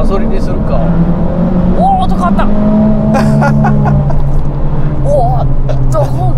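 Abarth 695's 1.4-litre turbocharged four-cylinder engine running under load, heard from inside the cabin. Its note rises slowly and then drops to a lower pitch about three seconds in.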